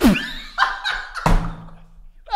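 A man bursting out laughing in short broken bursts, with a thud on the table as it starts.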